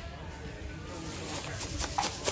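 Store background: faint distant voices over a low rumble, with a few short crackles near the end.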